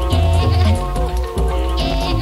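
Early-1990s UK rave/hardcore dance music from a DJ mix played back off cassette tape: repeating heavy bass notes under a busy synth line, with a warbling high sound that recurs about every second and a half.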